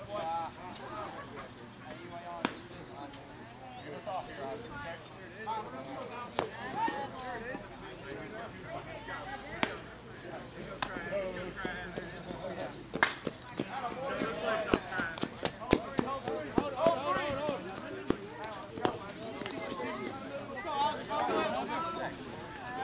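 Distant, indistinct voices of softball players talking and calling across the field, with scattered sharp clicks and knocks, most frequent in the second half.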